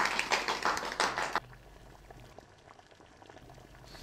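A small group of people clapping, a dense patter of hand claps that stops abruptly about a second and a half in, leaving faint room tone.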